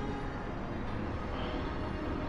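Soft, held background music over a low, steady rumble.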